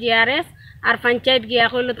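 A woman speaking in short bursts of Bengali, with a brief pause about half a second in.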